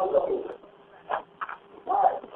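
Unclear voices over a narrow-band telephone line: a burst of speech in the first half second and short bursts later, over a faint steady hum.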